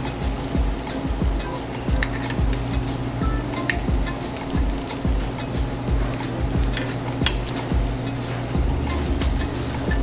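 Salmon cubes sizzling as they sear in butter in a nonstick frying pan over a gas burner, with scattered light taps and scrapes of a metal spoon in the pan.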